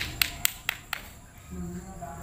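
A quick run of about five sharp smacks, roughly four a second, in the first second, followed by a voice near the end.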